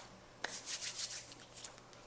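Hands rubbing together, working a thick oil-and-butter body butter into the skin: a small click, then about a second of soft, uneven rubbing.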